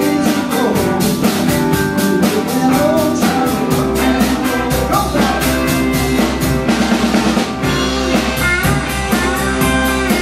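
Live blues-rock band playing an instrumental passage without singing: electric guitars over a drum kit keeping a steady, driving beat. A deep bass line comes in strongly about four seconds in.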